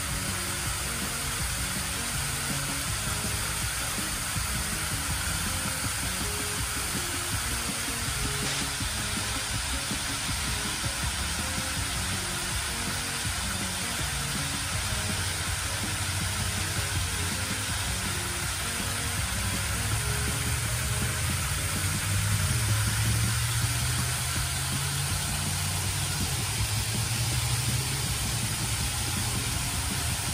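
Steady rushing hiss of fountain water spraying. A vehicle engine hums underneath and grows louder from about two-thirds of the way through.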